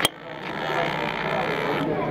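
A brief laugh with a sharp onset right at the start, then the background of a restaurant dining room: faint, indistinct voices over a steady low hum.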